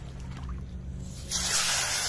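Hot cooking oil in a frying pan over a wood fire starts sizzling suddenly about a second and a half in as fish is dropped into it, then keeps sizzling steadily.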